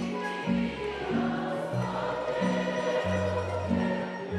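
Tamburica band playing a song live, with a plucked double bass line under the tamburicas and voices singing.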